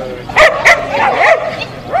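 Small dog giving two sharp, high yips in quick succession, about a third of a second apart, excited and ready to run.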